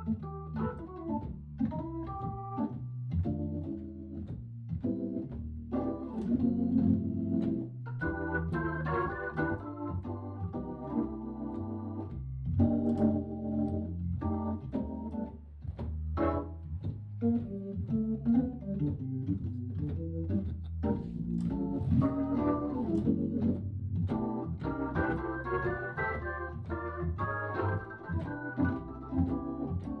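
Hammond B3 organ played with both hands: changing chords and melody over a sustained low bass line.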